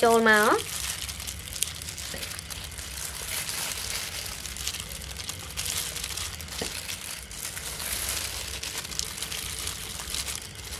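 A plastic-gloved hand kneading and squeezing raw sliced beef with shredded galangal in a plastic bowl: steady crinkling of the plastic glove with soft wet squelches of the meat.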